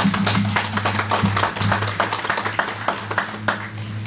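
An audience applauding: many close, irregular claps, over a steady low hum.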